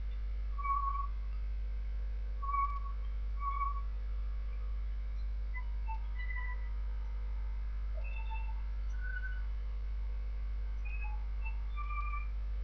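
Sparse, short whistle-like notes at changing pitches, likely soft background music, over a steady low hum.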